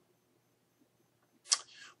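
Near silence, then about one and a half seconds in a sharp mouth click followed by a short intake of breath before speaking.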